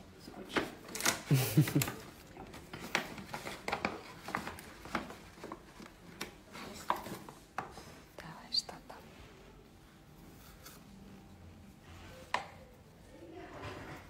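Paper gift bag rustling and crinkling as a small boxed gift is pulled out of it and handled, a run of short crackles that come thickest in the first half and thin out later.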